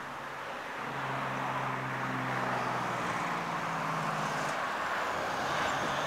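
Steady hum of a motor vehicle engine running nearby, over the broad noise of passing traffic. The hum shifts in pitch about three seconds in.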